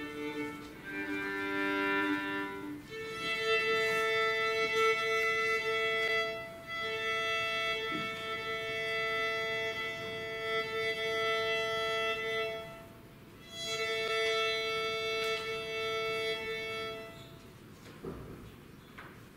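Violin being tuned: long bowed double stops on the open strings, a fifth apart, held for several seconds at a time with short breaks between strokes, stopping near the end.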